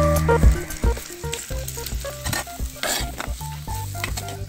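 Shallots, chillies and pirandai sizzling in oil in a clay pot, stirred and scraped with a metal ladle in short clicks. A music bed plays underneath.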